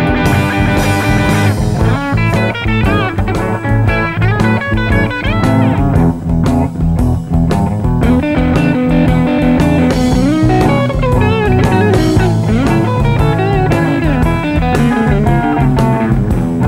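Live electric blues band playing an instrumental: an electric guitar takes the lead with bent and sliding notes over a steady bass line and drums.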